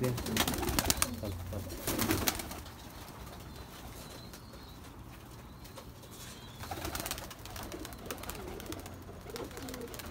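Domestic pigeons cooing in a loft, with sharp knocks and rustles in the first couple of seconds.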